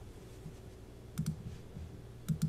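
Two quick, faint clicks about a second in, a double click at a computer, over a low steady hum.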